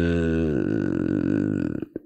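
A man's long, drawn-out hesitation sound "eee", held at a low steady pitch. About half a second in it sinks into a creaky rasp, and it trails off near the end.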